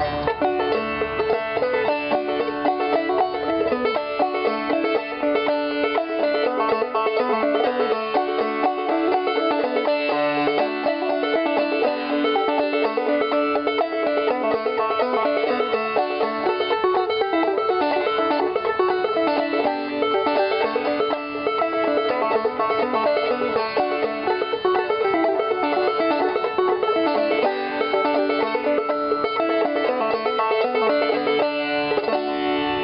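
Custom Pisgah White-Ladye open-back banjo with a calfskin head, played clawhammer style: a steady, lively old-time tune in the key of D.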